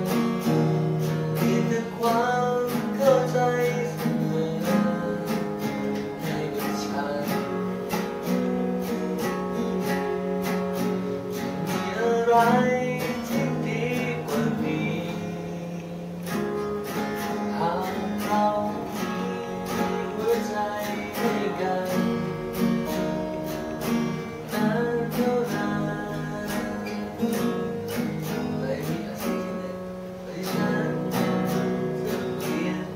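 Two acoustic guitars played together, strummed and picked, with a voice singing the melody over them.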